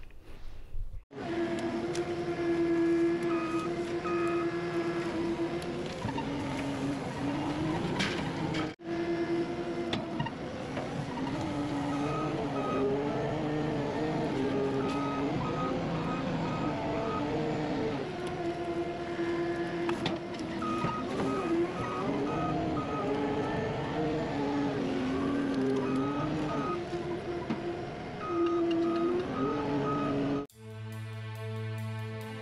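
A loader's engine running under work, its pitch rising and falling as the machine moves and lifts, with short repeated beeps over it.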